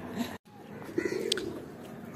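Domestic pigeons cooing quietly.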